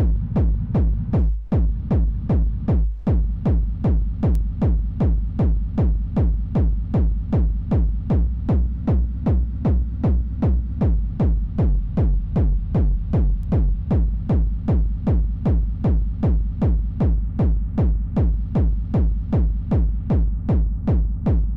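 Distorted hardstyle hall kick drum, made in FL Studio, looping at about two and a half hits a second. Each deep, heavy hit carries a reverb-made rumble between beats, which shifts in the first few seconds as the reverb is adjusted.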